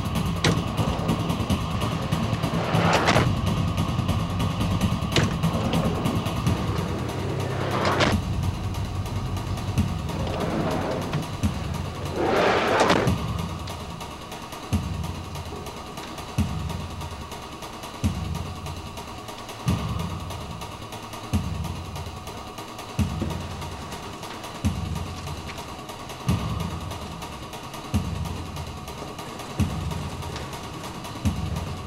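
A vehicle engine idling with a low rumble, broken by three or four brief louder swells. About halfway through this gives way to a slow, steady low beat of soundtrack music, one thump about every one and a half seconds.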